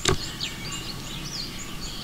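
Small birds chirping, many short high calls scattered over a steady outdoor background noise.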